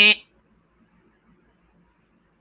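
A woman's short, drawn-out vocal 'eh' in the first quarter second, then near silence.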